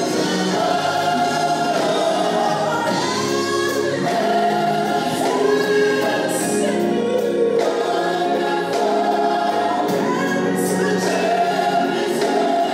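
Gospel praise team singing, with a woman's lead voice over the group. Drums and cymbals play behind them.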